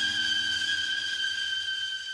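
The closing held note of a sped-up, pitched-up nightcore song: a single steady high tone with overtones, held and slowly fading out as the track ends.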